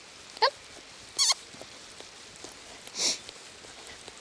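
A rider's short high-pitched kissing and clucking sounds, cues to a horse to keep trotting. There is one squeak about half a second in and another about a second later, then a brief breathy hiss near the end.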